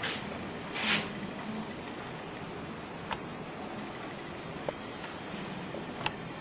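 A steady, high-pitched insect trill, as of crickets, runs continuously in the background, with a brief hiss about a second in and a few faint clicks.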